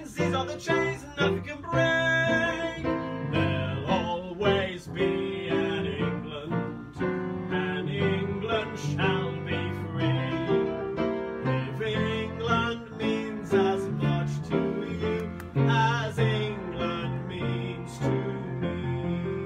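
Upright piano played solo: an instrumental old-time tune with melody over chords, many notes struck in quick succession.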